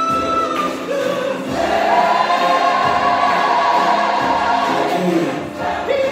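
Gospel worship singing by a group of voices, with a long held note in the middle.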